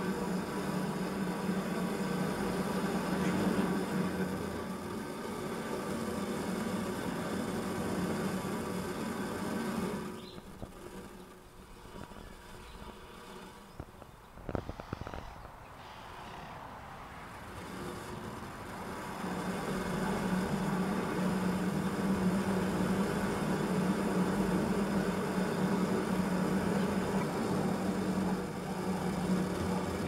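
Half a litre of water in a kettle over two burning solid fuel tablets, hissing and rumbling steadily as it comes to the boil. It goes quieter for several seconds in the middle, with a few light clicks, then rises again.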